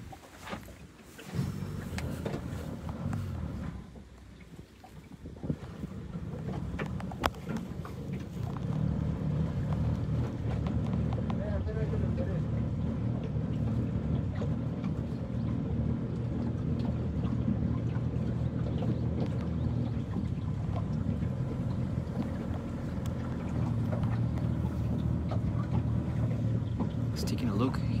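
Boat motor running with a steady low drone that builds up from about six seconds in and holds steady from about nine seconds on, with a few sharp knocks in the first eight seconds.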